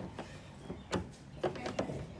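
A few faint clicks and light handling noise from an L-shaped hex key turning a screw into a plastic retaining clip on a plastic side skirt.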